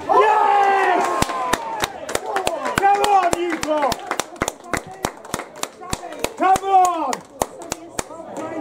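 Small crowd of spectators clapping with sharp, scattered claps, about three to four a second, to applaud a goal, with a few loud shouts of cheering at the start, about three seconds in and near the end.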